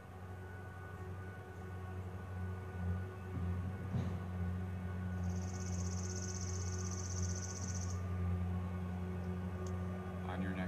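Steady low droning hum with fainter higher tones held underneath. About halfway through, a high, buzzy trill lasts roughly three seconds.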